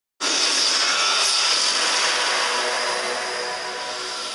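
Loud rushing whoosh sound effect of an animated logo intro, like a passing jet, starting abruptly and slowly fading, with faint steady tones underneath.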